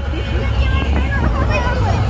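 Crowd of voices chattering and calling out over a low, uneven rumble from the slow-moving cars of a street procession.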